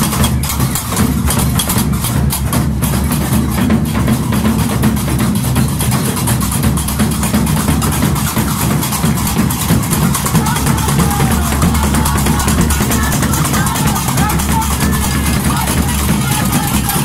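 Live Gnawa music: metal qraqeb castanets clacking in a fast, unbroken rhythm over a large double-headed drum being beaten, with voices singing or calling out near the end.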